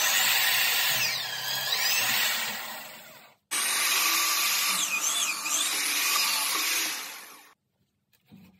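Corded electric drill mounted in a drill guide stand boring into a softwood board, in two runs of about three and four seconds. The second starts abruptly. The motor's whine dips and rises as the bit loads up in the wood and frees again.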